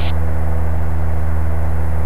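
Steady low drone of a light aircraft's engine in flight, heard inside the cockpit.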